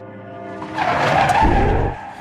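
Sustained music tones, then a rising noisy whoosh with a low rumble that swells from about half a second in and cuts off suddenly just before the end: an edited transition sound effect.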